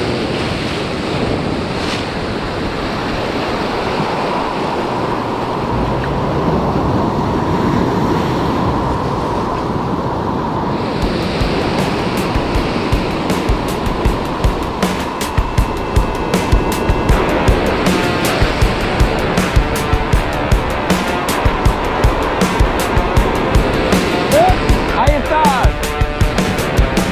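Sea surf breaking and washing over rocks, with wind on the microphone. About halfway through, rock background music with a steady drum beat comes in and grows louder, over the surf.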